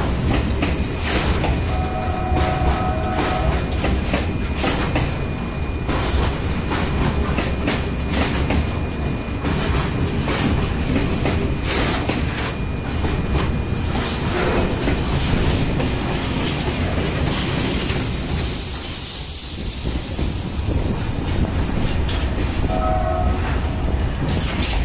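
Passenger train running along the track, heard from a carriage window: a steady rumble with wheels clicking over rail joints as it passes a line of freight wagons. A brief high tone sounds about two seconds in and again near the end.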